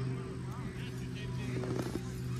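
Faint, distant voices of players and spectators over a steady low motor-like hum, with a few brief knocks near the end.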